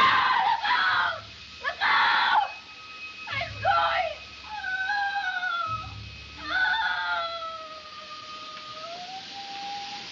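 A woman's voice as the melting witch, crying out in short anguished bursts, then giving long, wavering, slowly falling moans as she melts away, over a faint orchestral film score.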